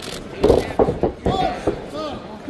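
Boxing gloves landing in a quick flurry of punches, several sharp smacks about half a second in, followed by raised voices. The exchange leads to the referee's standing eight count.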